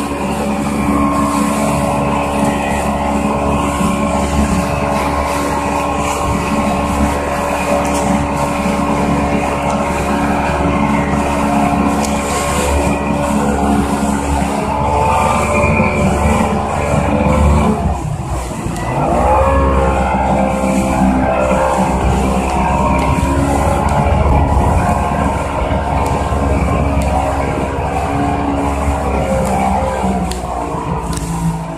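Motorboat engine running at speed, with the rush of water and wind. About eighteen seconds in its note drops briefly, then climbs again.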